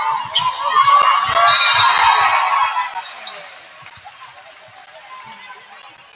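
Spectators in a gymnasium shouting and talking after a volleyball rally, loud for about three seconds and then dying down. A series of short thuds on the gym floor runs under the voices.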